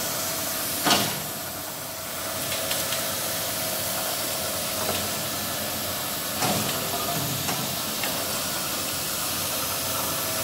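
Edge gilding machine running with a steady hiss, broken by a sharp clack about a second in and another about six and a half seconds in, with a few lighter clicks between.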